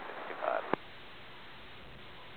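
Airband VHF radio: the last word of a pilot's readback cuts off with a sharp click as the transmission ends, followed by a steady hiss of receiver static.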